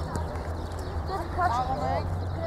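Distant raised voices of players and coaches calling out across a football pitch, loudest in the second half, over a steady low hum.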